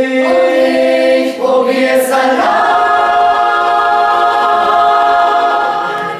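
Mixed choir of men's and women's voices singing: a few quick chord changes, then one long held chord that tapers off near the end.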